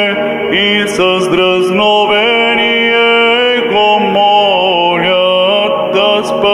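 A man chanting Orthodox liturgical chant into a handheld microphone, with long held notes and slow ornamented glides from one pitch to the next.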